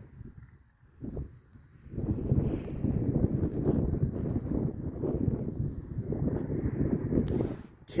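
Wind buffeting the microphone, a rough, uneven rumble that starts about two seconds in and drops out just before the end.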